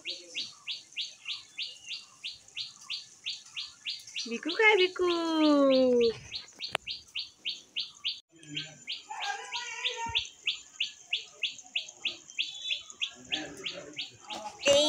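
A small bird chirping steadily in short high notes, about four a second. About four seconds in, a long voice call falls in pitch over a second or so and is the loudest sound.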